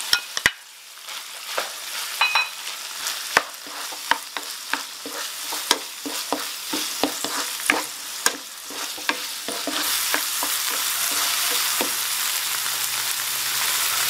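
Diced king oyster mushroom and minced pork sizzling in hot oil in a frying pan while a wooden spatula stirs them, clicking and scraping against the pan many times. The sizzle becomes steadier and louder near the end.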